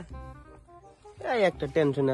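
A loud, drawn-out human voice starts just over a second in, sliding down in pitch, then breaks into shorter pitched cries, after a quiet first second.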